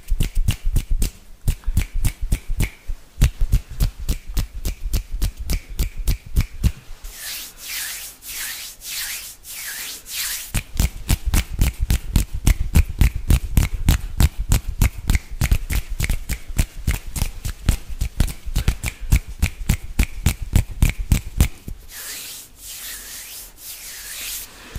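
Fast hand sounds on a close microphone: fingers and palms rubbing and fluttering, with rapid soft thumps several a second. Louder hissing bursts of palms rubbing together come about seven seconds in and again near the end.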